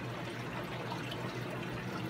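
Steady trickle and splash of water circulating in a large aquarium, with a low steady hum beneath.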